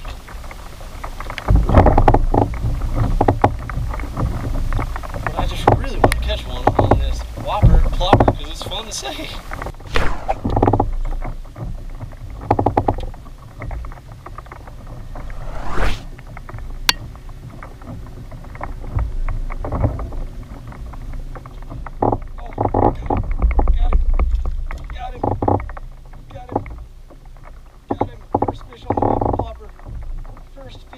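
Baitcasting reel cranked in short retrieves from a kayak, with water sounds and irregular louder bursts and knocks throughout.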